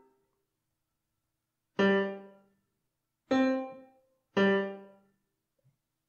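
Three short sampled-piano notes in the bass range, from Finale notation software, each sounding once as a note is entered into the left-hand accompaniment. Each starts sharply and fades within about half a second, with silence between them.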